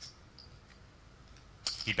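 Poker chips clicking together as a player handles his stack: a light click at the start, a few faint ticks, then a quick cluster of clicks near the end. A man's voice begins just before the end.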